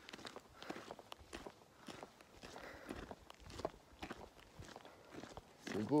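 A walker's footsteps, about two steps a second and soft.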